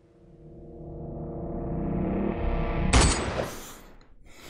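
Dramatic score swelling: sustained tones grow steadily louder for about three seconds, then a sharp, loud pistol shot cracks about three seconds in and rings off into a noisy tail.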